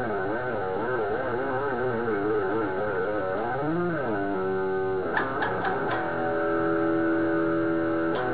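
Electric guitar played solo: sustained notes waver up and down in pitch for about four seconds, then steady held notes, a few sharp picked strokes, and a long ringing chord.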